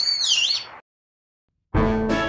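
Shrill whistled call of a brown-eared bulbul, one high note that dips in pitch and rises again, ending within the first second. Piano music starts near the end.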